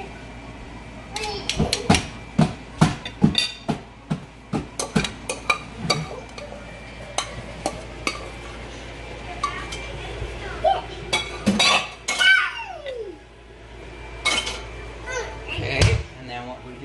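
Yellow plastic salad servers clicking and scraping against a serving bowl and plates as salad is dished out, with a quick run of sharp clicks over the first six seconds and more near the end. A short voice sounds around the middle.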